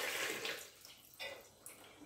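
Soaking water being poured off sea moss, a splashing stream that tails off within the first second, followed by a couple of faint clicks.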